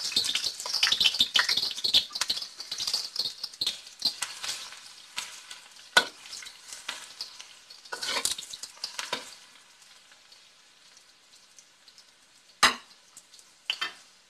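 Chopped garlic frying in hot oil in a wok, sizzling hardest at first and dying down after about ten seconds. A spatula scrapes and clinks against the wok a few times as it is stirred.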